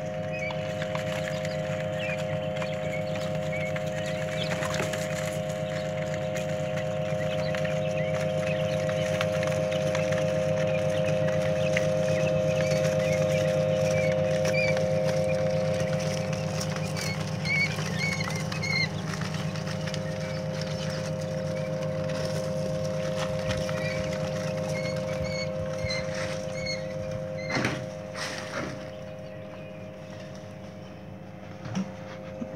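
Newly hatched quail chicks peeping in short, high chirps over a steady low mechanical hum, with a couple of sharp knocks near the end.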